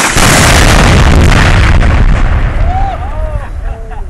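Tannerite exploding target detonated by a rifle bullet: one very loud blast that overloads the microphone, staying loud for about two seconds before fading away.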